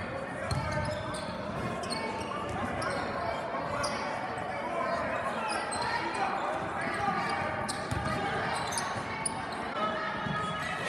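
Live game sound of high school basketball in a gymnasium: a basketball bouncing on the hardwood, sneakers squeaking and players' and spectators' voices echoing in the hall.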